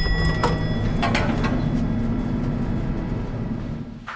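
An elevator's arrival chime rings out over the first second while the elevator's sliding doors open with a steady low rumble and a few clicks. The rumble stops just before the end, as the doors finish opening.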